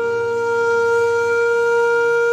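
Background music: a flute holding one long, steady note.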